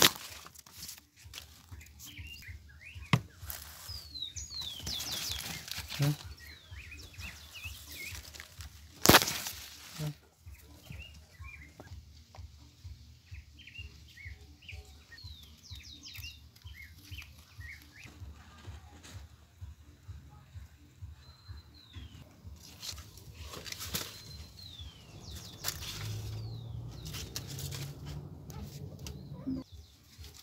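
Rabbits feeding in a pile of corn husks: irregular rustling and crackling of the husk leaves, with a couple of louder snaps, one at the start and one about nine seconds in. Birds chirp now and then in the background.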